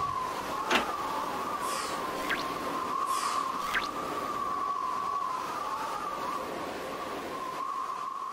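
End-card sound design: a steady, slightly wavering tone over a soft hiss, with a sharp click just under a second in and two whooshes a little after two and three seconds in.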